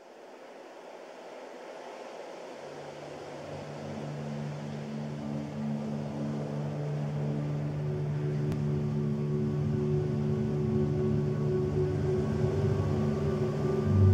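Dark ambient music fading in from silence: a soft wash of noise swells up, and a few seconds in it is joined by sustained low drone notes that build in layers, growing steadily louder.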